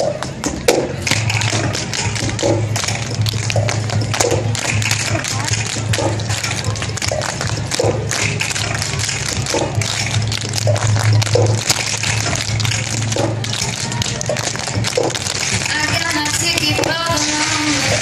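Dancers' shoes tapping and clicking on the street pavement in time with loud dance music that has a regular beat and a low sustained drone. The drone fades about two-thirds of the way through, and a wavering voice-like melody comes in near the end.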